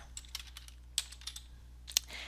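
Typing on a computer keyboard: a handful of separate keystrokes, with sharper ones about a second in and near the end.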